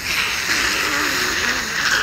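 A steady hiss that starts suddenly and cuts off after about two seconds.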